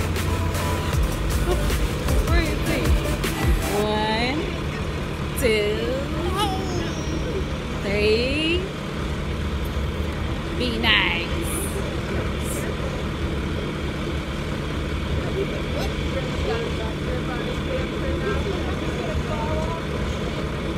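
Steady low rumble of a tractor engine running under background music. A few short voice-like glides come between about four and eleven seconds.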